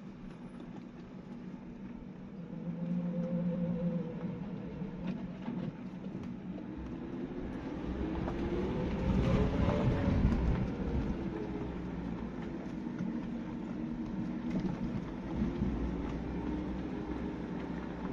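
Suzuki Jimny's 1.5-litre four-cylinder petrol engine pulling along a rough dirt track, heard inside the cabin, its revs rising and falling with the terrain; it is loudest about halfway through, with road noise and rattling from the rough ground.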